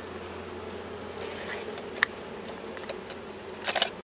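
Steady hum of a honey bee colony on an open hive's brood frame. A single sharp click comes about halfway through, and a short clatter of clicks near the end.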